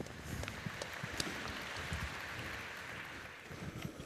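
Audience applauding, fairly faint, dying away near the end.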